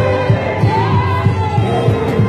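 Gospel choir singing in isiZulu over a steady low beat of about three strokes a second.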